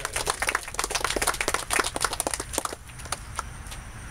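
A small audience applauding, the claps thinning out and stopping about three seconds in.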